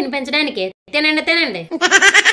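A woman's voice, high-pitched and wavering, breaking off briefly about three-quarters of a second in and then going on.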